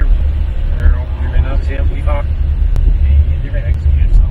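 Low, steady rumble of a moving car heard from inside the cabin, with faint talk from the front seats partway through.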